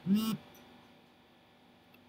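A man's voice making one short hummed syllable like "hm", rising then falling in pitch, just after the start. A faint steady hum lies underneath.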